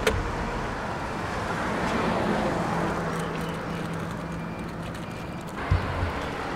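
Roadside traffic noise with a motor vehicle running nearby. A steady low hum holds for a few seconds in the middle, and there is a single thump near the end.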